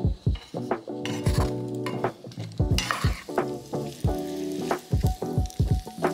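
Fresh potato gnocchi sizzling as they fry in oil in a hot pan, with a wooden spoon stirring them. Background music with a beat plays throughout.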